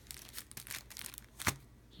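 Plastic cellophane sleeves of sticker sheets crinkling and rustling as they are handled and moved, with a sharp click about a second and a half in.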